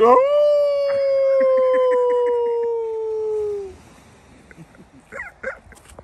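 A man doing a werewolf howl at the full moon: one long howl that swoops up at the start and then slowly sinks in pitch, lasting about three and a half seconds. Another person laughs under it.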